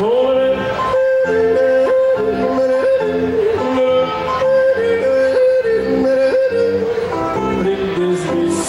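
A man yodeling, holding a high note and flipping down from it in quick breaks again and again. Under the voice, a zither plays a steady alternating bass-and-chord accompaniment.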